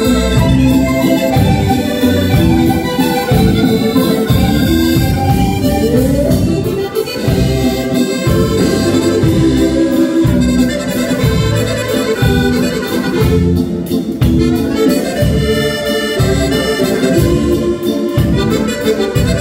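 Two accordions playing an Italian ballo liscio dance tune live over a steady bass beat.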